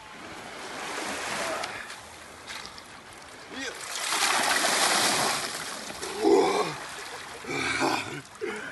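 A bucketful of water poured over a man's head, splashing down over his body and into the shallow sea for about a second and a half, a few seconds in. A voice cries out and speaks just after the dousing.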